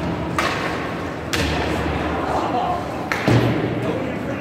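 Ice hockey play on a rink: three sharp knocks of stick and puck, spread across the few seconds, then a heavier low thud against the boards that is the loudest sound. The sounds echo in the arena.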